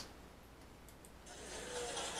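Near silence, then about a second in the faint steady hiss and room sound of a stand-up comedy recording starting to play.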